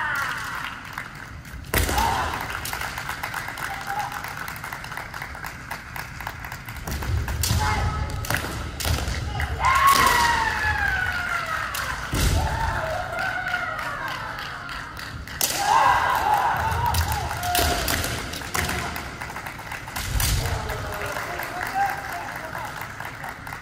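Kendo bout: players' kiai shouts, long drawn-out cries that fall in pitch, together with the sharp cracks of bamboo shinai strikes and heavy stamping of the lead foot on a wooden floor, several times.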